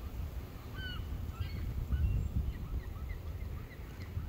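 Wind rumbling on the microphone, with a few faint, short, high-pitched calls in the distance.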